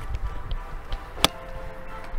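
A golf iron striking a ball off the range mat: a single sharp click a little over a second in. Background music with sustained tones runs underneath.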